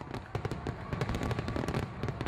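Fireworks crackling: a dense, irregular string of small pops.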